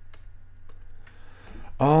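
Several faint, irregular clicks of computer keys being pressed.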